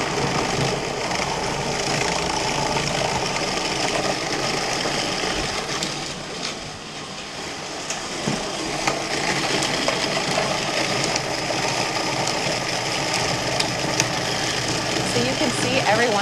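Food processor motor running steadily, its blade churning frozen cherries and frozen milk mixture into gelato, dipping a little in loudness about six seconds in. A few sharp ticks punctuate it, as the blade hits pieces of frozen cherry.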